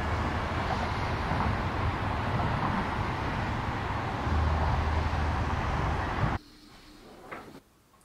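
Street traffic noise: a steady rush with a low engine hum that swells twice, cutting off abruptly about six seconds in to near quiet.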